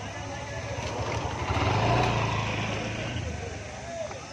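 A motor vehicle passing close by on the road, its engine hum swelling to a peak about two seconds in and then fading away.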